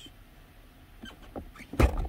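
Quiet, with a few faint clicks, then a single sharp thump shortly before the end.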